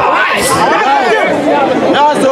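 Speech only: a man talking into a bank of microphones, with other voices chattering around him.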